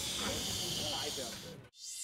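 Steady hiss of street ambience with faint voices in the background, cut off abruptly near the end. A short electronic swoosh begins as the programme's logo ident starts.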